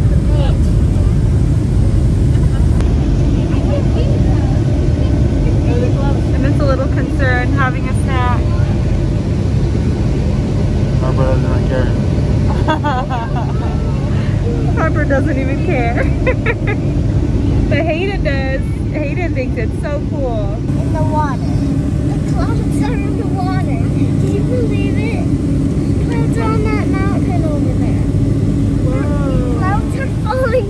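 Turbofan airliner heard from inside the cabin during takeoff and climb: a steady, deep engine and airflow roar, with indistinct voices over it at times.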